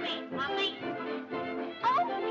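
Lively cartoon orchestra music, with short high gliding squeals over it near the start and again near the end.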